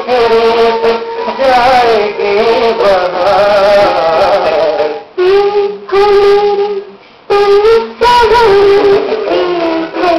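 A voice singing a Hindi song over music, the melody held in long, wavering notes, with two short breaks a little after the middle.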